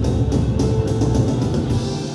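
Live rock band playing loud: drum kit pounding a steady beat under electric guitars and bass. Right at the end the drums and low end cut off.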